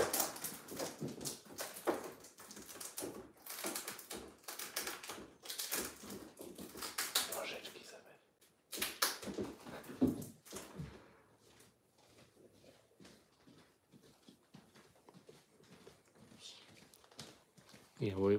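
Rustling and clicking of packaging being handled as cat toys are unboxed. Busy for the first ten seconds or so, then fainter scattered clicks.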